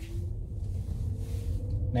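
Low steady rumble in the cabin of a 2011 Toyota Estima 2.4 hybrid driving on electric power alone, its petrol engine off, with a faint whine slowly rising in pitch.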